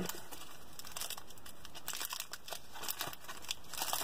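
Crinkling of a candy bar's foil and plastic wrapper being handled and peeled open: irregular small crackles, sparse at first and busier in the second half.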